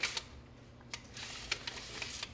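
A few light clicks and taps of a pizza pan against a wire oven rack as the pizza is set on the rack and nudged into place.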